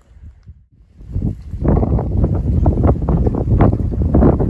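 Wind buffeting the microphone: a loud, rumbling, crackling rush that starts about a second in.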